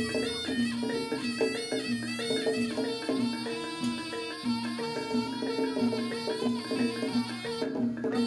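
Live jaranan ensemble music: a shrill reed trumpet (slompret) plays a wavering melody over a steady, evenly repeating low pattern of tuned gong-chime notes, about two a second.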